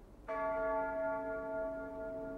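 A single stroke of a large church bell, struck about a quarter of a second in and ringing on while slowly dying away.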